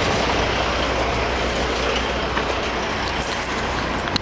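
Heavy dump truck driving past, a steady engine rumble under continuous road noise.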